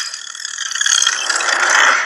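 Film transition sound effect: a loud whooshing rush with a rapid ratcheting rattle. It starts suddenly, builds for nearly two seconds and fades just after.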